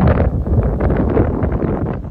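Wind blowing across the microphone, loud and uneven, with the energy heaviest in the low end.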